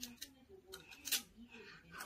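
Plastic toy food pieces being handled: a few short clicks near the start and a brief scrape about a second in, under a faint murmuring child's voice.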